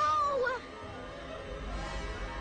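A short, high, wavering cry lasting about half a second at the start, then a low droning music bed that swells about a second and a half in.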